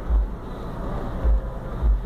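Road traffic crossing the intersection, heard from inside a stopped car's cabin: a steady low rumble with a few brief deeper swells.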